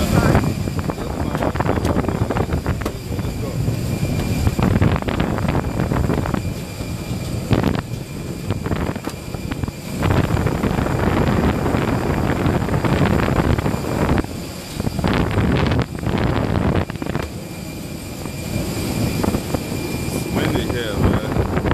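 Loud aircraft noise on an airport apron: a continuous rushing roar with a faint steady high whine running through it, swelling and dipping as the phone moves, with wind buffeting the microphone.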